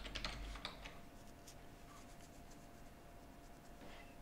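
Computer keyboard typing, with a quick run of keystrokes in the first second and then a few scattered key clicks.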